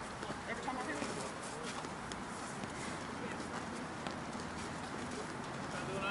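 Indistinct distant voices of players and onlookers over a steady outdoor background hiss, with no clear bat contact.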